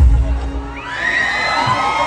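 A dance track with heavy bass stops about half a second in. A concert crowd then breaks into loud, high-pitched screaming and cheering.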